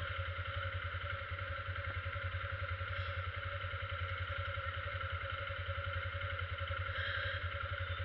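Motorcycle engine idling steadily at a standstill, a low even pulse.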